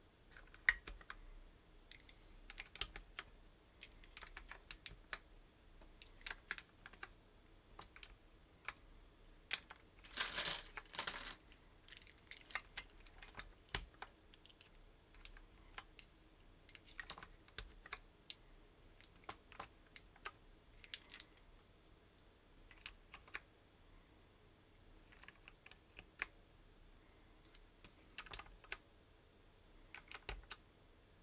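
Plastic SA-profile keycaps clicking as they are handled and pressed onto the keyboard's switches, in scattered single clicks. About ten seconds in comes a longer, louder clatter of keycaps rummaged in a plastic basket.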